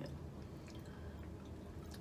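Quiet room with a steady low hum and faint, wet mouth sounds of someone chewing a soft, chewy candy.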